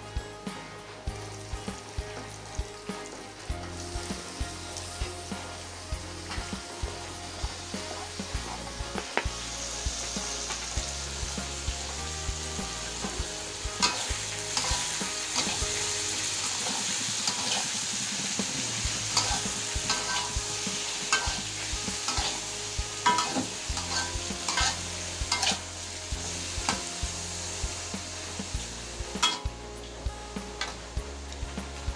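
Tomato and pineapple chunks frying in a metal wok with a steady sizzle, which grows louder about a third of the way in. A metal spatula stirs and scrapes against the wok in frequent sharp clicks and knocks, busiest in the second half.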